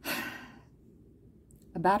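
A woman's heavy sigh: one breathy exhale of about half a second, loudest at its start and fading out.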